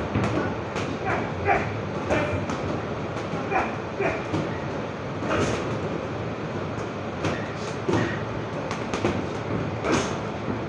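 Boxing gym training: irregular sharp strikes of punches, spaced a second or so apart, with short sharp voice sounds over a steady, noisy background.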